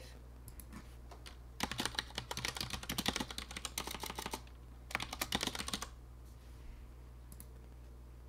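Typing on a computer keyboard: a run of quick keystrokes lasting about three seconds, a short pause, then a second shorter run, followed by a single click near the end.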